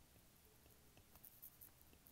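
Very faint tapping and scratching of a stylus writing on a tablet screen, with a few soft ticks and a scratchier stretch a little past halfway.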